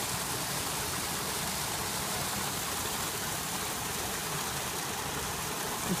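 Small garden waterfall pouring over a rock ledge into a pond: a steady, even splashing rush of water.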